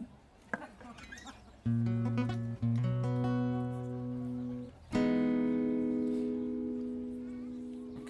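Acoustic guitar: a chord strummed about a second and a half in, struck again shortly after and cut off, then a new chord strummed about five seconds in and left to ring, slowly fading.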